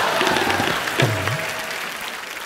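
Studio audience applauding after a punchline, with a brief comic music sting over it; the applause fades away by the end.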